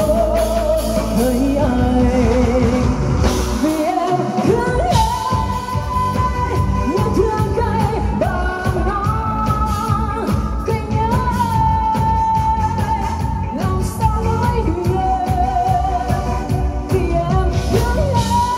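Live band playing a Vietnamese pop song: a woman sings into a microphone over drum kit, keyboard and electric guitar. The bass and drums drop out briefly about four seconds in, then the full band comes back in.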